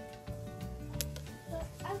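Background music with held notes over a repeating low bass pulse, and a single sharp click about halfway through.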